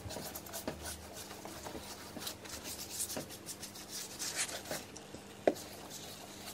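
Paintbrush bristles stroking paint onto a window sill, a soft scratching rub repeated stroke after stroke, with one sharp tap near the end.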